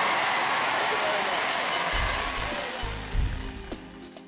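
A large crowd cheering and applauding in old newsreel sound, fading out as background music with a steady beat comes in about halfway through.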